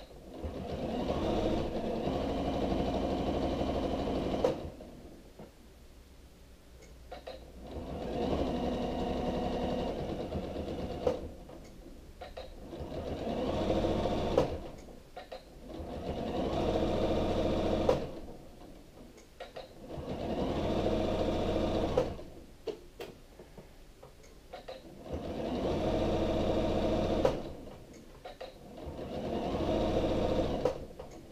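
Janome sewing machine straight-stitching bias binding onto a curved quilted edge. It runs in about seven bursts of a few seconds each, with short stops between them where the fabric is pivoted to follow the curve.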